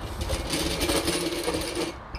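A brief mechanical whirring rattle, lasting about a second and a half, steady in pitch.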